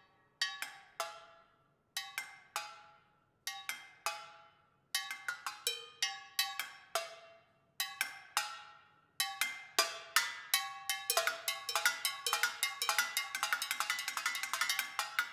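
Solo metal percussion: tin cans, cowbell and cymbals struck with sticks, each stroke ringing on with a metallic tone. It starts as single strokes spaced apart with pauses, grows denser, and from about nine seconds in becomes a quick, steady stream of strikes.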